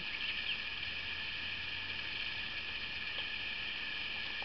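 Steady background hiss with a faint low hum: room tone with no distinct sound event.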